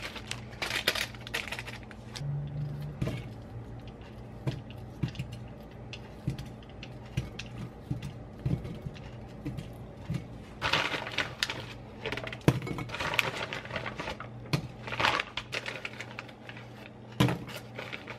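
Soup ingredients going into an enamel pot: plastic food packets crinkling and rustling, with scattered clinks and taps of food and a knife against the pot. A steady low hum lies under it.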